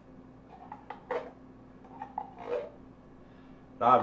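A metal spoon scraping and clinking against the inside of a tin can as thick condensed cream of mushroom soup is dug out of it: a few short, separate scrapes.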